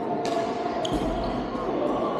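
Badminton rackets striking shuttlecocks in a large indoor sports hall: two sharp hits, about a quarter second and just under a second in, each with a short ringing tail, over a murmur of players' voices.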